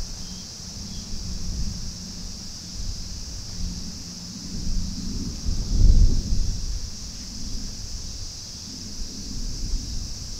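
Wind buffeting the microphone in irregular low rumbling gusts, strongest about six seconds in, over a steady high hiss.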